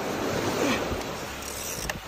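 Steady wind and sea-surf noise, with a single sharp click near the end.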